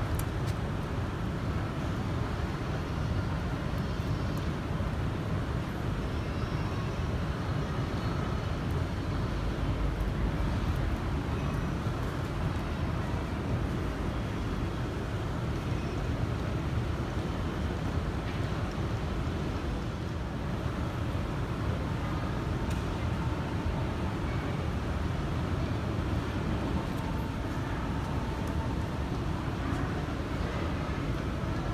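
Steady low rumble and hiss of underground station ambience, even throughout with no distinct events, and faint voices in the background.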